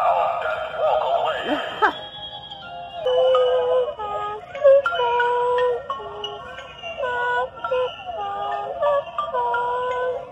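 A tinny electronic tune from a small toy speaker: a warbling, wavering sound for about two seconds, then a simple melody of clean held notes, from an animated Halloween doll decoration riding a rocking horse.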